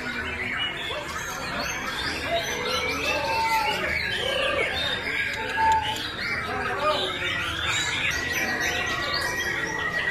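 Contest chorus of caged white-rumped shamas (murai batu) singing at once: many overlapping whistles, chirps and trills. A long steady high whistle comes in near the end.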